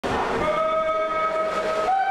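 A swim start signal sounds one long, steady horn-like tone lasting about a second and a half, stepping up slightly in pitch near its end. It plays over the constant hiss of an indoor pool.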